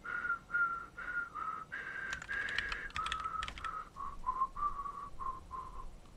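Someone whistling a short tune of about a dozen notes, pitch stepping down in the second half, with a quick burst of computer keyboard typing in the middle.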